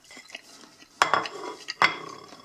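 A fork scraping and knocking against a plate while cutting off and picking up a piece of potato pancake, with two sharp clinks, one about a second in and one near the end.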